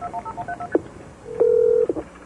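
Touch-tone telephone keypad beeps as 911 is dialed: a quick run of short paired-tone beeps. Then comes a click and, about a second and a half in, a steady tone on the line lasting about half a second, followed by another click as the call connects.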